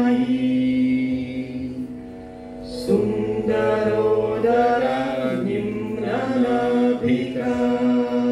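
Sanskrit hymn to Sarasvati sung as a melodic chant over a steady low held note. The voice drops away briefly about a second and a half in and comes back about three seconds in.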